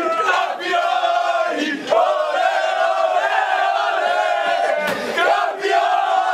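A group of men chanting together in unison, a football victory chant, in long held phrases that break off briefly about two seconds in and again about five seconds in.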